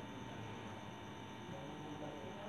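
Faint steady electrical hum with a light hiss, the background noise of the microphone and sound system.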